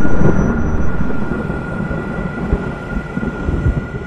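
Deep rumble like a thunder sound effect, dying away gradually, with a faint steady high tone held over it.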